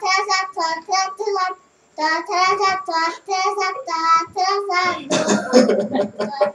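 A child singing a tune in a high voice, unaccompanied, with a short break about a third of the way in. Near the end a louder burst of laughter breaks in over the singing.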